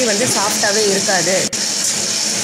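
Tabletop wet grinder running, its stone roller turning in the steel drum as it grinds idli batter: a steady hiss under a talking voice. The sound drops out for an instant about one and a half seconds in.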